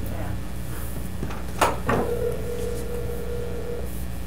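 A sharp click, then a steady ringing tone of about two seconds from a cell phone on speaker: the ringback of an outgoing call ringing at the other end, not yet answered.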